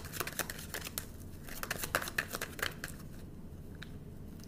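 Tarot deck being shuffled by hand: a quick run of card flicks and clicks that thins out about three seconds in.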